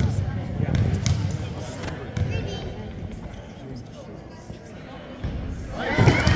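A basketball bouncing a few times on a gym's hardwood floor, with a sneaker squeak and background voices echoing in the gym. The voices get much louder near the end.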